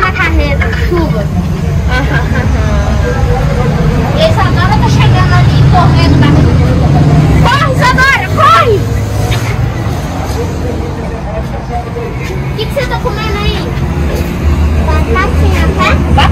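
Loud, steady low rumble of a large vehicle's engine, with voices and shouts over it; a couple of rising and falling calls stand out about halfway through.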